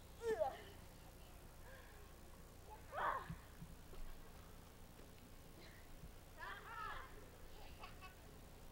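A small child's high-pitched wordless calls: three short bursts, one just after the start, the loudest about three seconds in, and one near the end.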